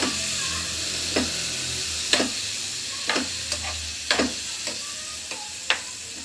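Chopped tomatoes, onions and green chillies sizzling in a frying pan as they are stirred, with a sharp scrape of the spatula against the pan about once a second over the steady sizzle.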